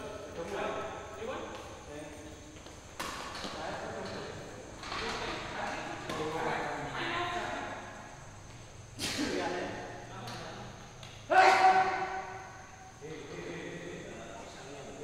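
Several people talking and calling out in an echoing indoor sports hall. A few sudden loud sounds cut in; the loudest comes just past eleven seconds in.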